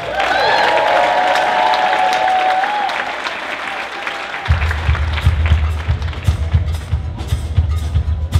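Audience applause with a long held note ringing over it for the first few seconds. About four and a half seconds in, the blues band kicks in with a steady beat on drums and double bass.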